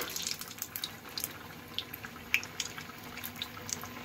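Bread pakora deep-frying in hot mustard oil in a kadai: a steady sizzle with scattered pops and crackles.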